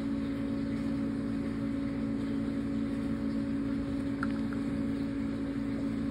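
Steady low mechanical hum, unchanging throughout.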